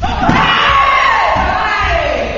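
Loud shouting as a punch lands in a karate kumite bout: one long cry that falls in pitch over about two seconds, with other voices shouting behind it.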